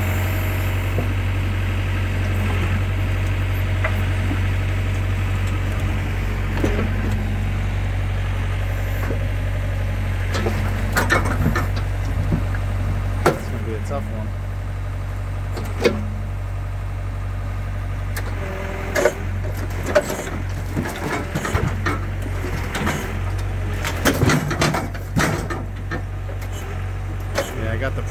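Komatsu WB-150AWS backhoe's diesel engine running steadily while its hydraulic thumb and bucket grab logs. Scattered knocks and clunks of logs and steel come in about halfway through and grow frequent near the end.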